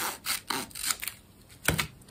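Scissors cutting through paper folded double: several short rasping snips, the last one near the end the sharpest.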